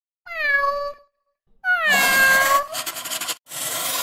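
A cat meowing twice, each call sliding down in pitch, the second one longer. The calls are followed by a harsh, raspy noise in two short bursts.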